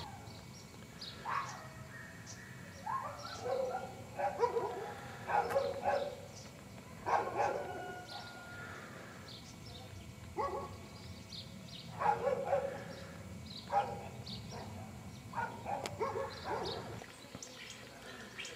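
A dog barking over and over, a bark or a short run of barks every one to two seconds, with small birds chirping.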